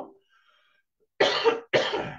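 A man coughing twice into his fist, two harsh coughs about half a second apart starting about a second in. It is a lingering cough that he thinks could be from allergies.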